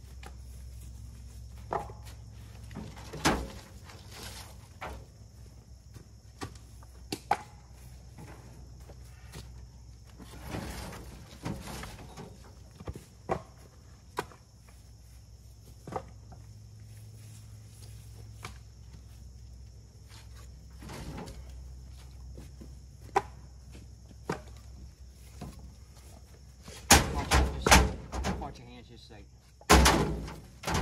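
Split firewood logs being tossed and stacked, wood knocking on wood at irregular intervals, with a quick run of loud knocks near the end. A steady low hum runs underneath.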